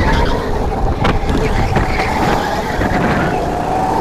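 Racing kart engine running on throttle, heard from on board: a steady high engine note that eases slightly in pitch in the first second and then holds, over a low rumble.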